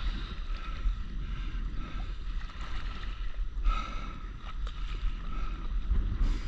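Wind rumbling on the microphone out on open sea, with water lapping and splashing around a stand-up paddleboard.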